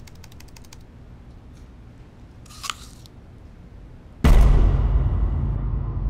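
A quick run of laptop keys clicking, then a short crunch of a bite of apple. After that comes a sudden deep boom, a dramatic sound-effect hit, which is the loudest sound and dies away slowly.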